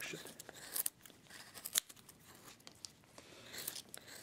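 Hand chisel cutting chips from a basswood block: a few short, sharp cuts, one about a second in, another near two seconds, and more near the end.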